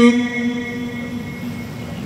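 A male Qur'an reciter's long held note, amplified through the microphone, ends right at the start and fades in the hall's echo within about half a second. A steady low background rumble of the room and PA follows, with no voice.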